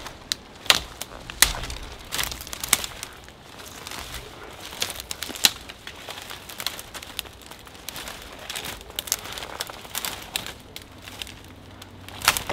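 Footsteps pushing through woodland undergrowth: dry twigs and brash crackling and snapping underfoot amid the rustle of leaves, with two sharper snaps in the first second and a half.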